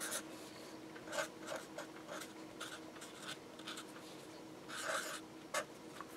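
Felt-tip marker writing on paper in quick, faint, short strokes, with one longer stroke near the end.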